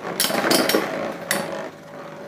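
Two spinning Beyblade tops rattling in a plastic stadium, with several sharp clacks in the first second and a half as they strike each other and the rim, then a quieter whirring spin.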